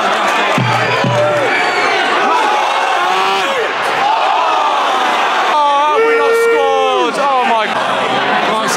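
Football crowd in the stand singing and shouting, many voices at once. One loud drawn-out shout close by in the second half falls away at its end.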